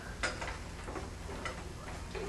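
A sharp click about a quarter of a second in, then a few fainter clicks, over a steady low room hum.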